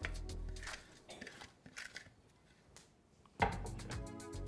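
Background music, dropping low in the middle and coming back louder about three and a half seconds in, over faint soft scraping and clicks as boiled, mashed potato is pushed off a plate into a glass bowl.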